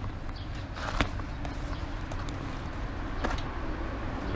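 Light handling sounds of a bicycle tyre and inner tube being worked off the rim by hand, with a sharp click about a second in and a few fainter ticks. Under them is a steady low rumble of city street background.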